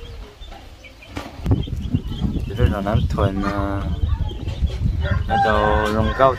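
A rooster crowing, with a steady low rumble underneath that starts about a second and a half in.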